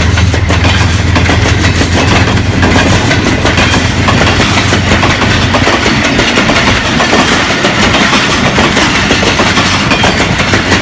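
Passenger coaches of a train rolling past at speed, wheels clattering over the rail joints. The low drone of its GE U20 diesel-electric locomotive fades over the first few seconds as it moves away.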